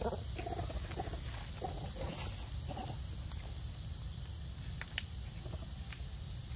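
Macaque giving about five short calls in the first three seconds, over a steady high-pitched drone of insects.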